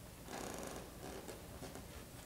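Quiet room tone of a concert hall in a hush, with a brief soft rustle about half a second in and a few faint clicks after it.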